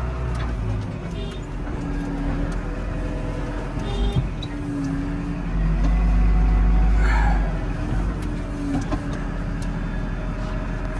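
Tractor engine running, heard from inside the cab as a steady low rumble that swells louder for a couple of seconds just past the middle.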